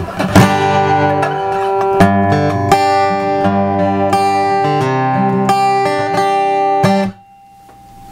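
Acoustic guitar played through a Fishman Aura Spectrum acoustic imaging pedal, set to its bluegrass-style image: a series of strummed and picked chords ringing out, then damped to a sudden stop about seven seconds in.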